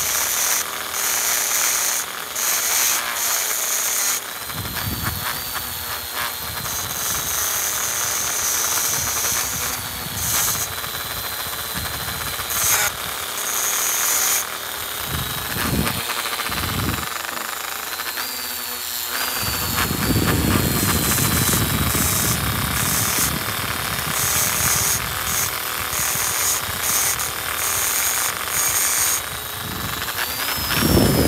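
Handheld rotary tool running at high speed, its whine dipping and rising a little as an abrasive polishing point grinds on a white copper ring. Low rumbling joins in during the second half.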